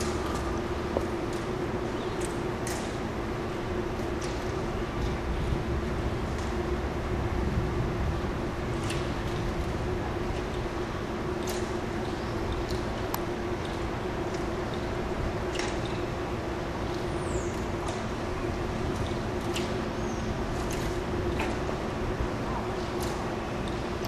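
Steady outdoor background noise with a constant low hum, dotted with faint high clicks and one short falling chirp late on.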